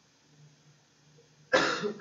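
A man coughs once, a sudden short cough near the end; before it there is only a faint low hum.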